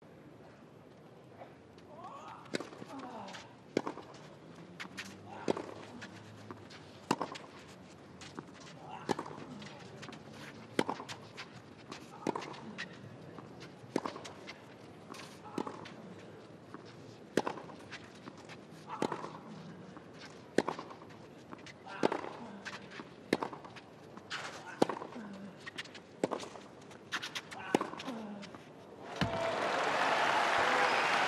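Tennis ball struck back and forth on a clay court in a long rally, about one racquet hit every one and a half seconds, most hits followed by a short grunt from the player. Crowd applause rises sharply near the end as the point finishes.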